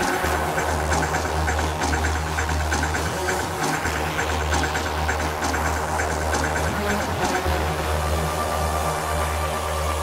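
Techno playing in a DJ mix: a heavy, droning bass line that drops out briefly every few seconds under a steady, ticking percussion rhythm.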